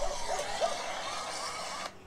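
Playback of the video being watched, thin and tinny with no bass and a faint voice in it, cut off suddenly near the end as it is stopped.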